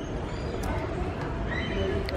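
Steady shop background noise: a low hum with faint distant voices.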